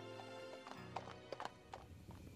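A horse's hoofbeats, a few clip-clops in the second half, over soft background music with sustained tones.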